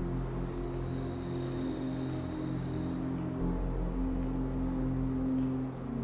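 Ambient background music of sustained low drone tones, with a thin high tone held for about two seconds near the start.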